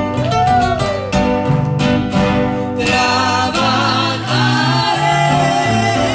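Two acoustic guitars strummed in a steady rhythm with a bass line, and a man and a woman singing a Spanish-language hymn together; the voices are strongest from about halfway through.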